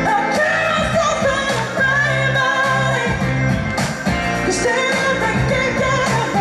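Live pop-rock band: a woman singing lead into a microphone over electric guitar, bass and a steady drum beat.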